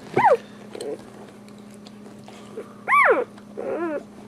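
Two-day-old Boxer puppies squealing: a loud squeal that rises and falls at the start and another about three seconds in, with shorter wavering whimpers between and near the end.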